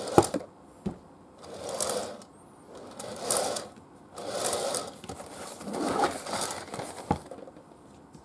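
A cardboard box being turned by hand on a round display stand: a series of rubbing, sliding swishes, each about a second long, with a few sharp knocks near the start and again near the end.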